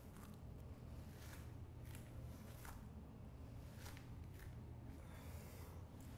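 Near silence: faint low room hum with a few soft, brief rustles.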